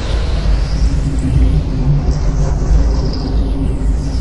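A deep, steady, loud rumble with a faint hiss above it: a cinematic rumble sound effect of the kind laid under documentary space animation.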